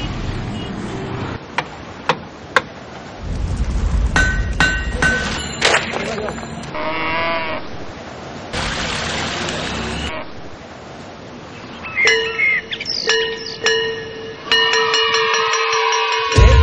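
A string of short outdoor sound clips. Near the start come three sharp hammer blows, a hammer driving a nail into the planks of a wooden boat. Near the end come children's voices over steady ringing tones.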